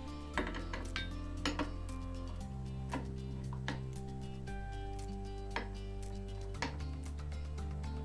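Background music with sustained chords that change every couple of seconds, over scattered short metallic clinks of steel spanners working the router's collet nut as it is tightened onto the drag knife shank.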